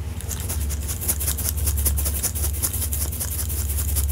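Fingers rubbing and squeezing a Beanie Baby snowman plush close to the microphone: a rapid run of scratchy fabric-rubbing sounds over a steady low hum.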